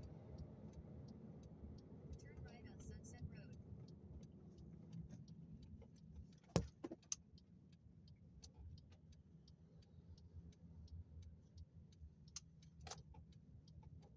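Faint road noise of a moving car heard from inside the cabin: a low, steady rumble, with a fast run of faint ticks over it and one sharp click about six and a half seconds in.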